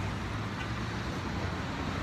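Road traffic on a multi-lane street: a steady noise of cars passing.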